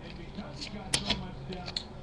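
Stiff chrome trading cards being shuffled in the hands, with a few light clicks and snaps of card stock, the sharpest about a second in.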